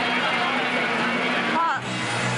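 Indistinct voices over steady background noise, with a brief dip in the sound shortly before the end.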